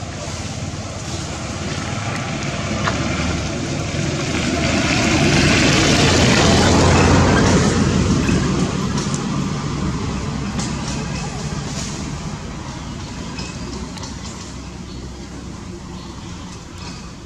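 A motor vehicle passing by, its noise swelling to loudest about six to eight seconds in and then slowly fading away.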